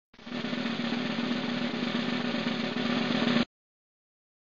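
A snare drum roll, growing slightly louder toward the end and cutting off abruptly about three and a half seconds in.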